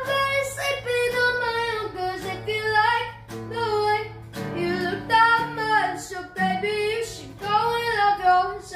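A high voice singing long notes that glide and bend in pitch, over acoustic guitar.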